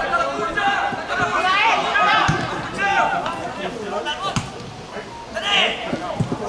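Voices calling out across a football pitch during play, with two sharp thuds of a football being kicked, about two and four seconds in.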